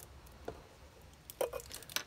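Handling of Kapton tape on a 3D-printer heatbed with a craft knife: faint crinkling and a few small sharp clicks, about half a second in, around a second and a half, and near the end.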